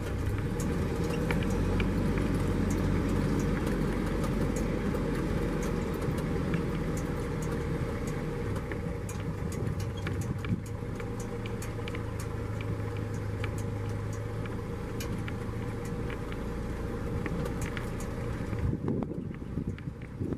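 Safari vehicle's engine running as it drives slowly over rough ground, a steady low hum with frequent small clicks and rattles.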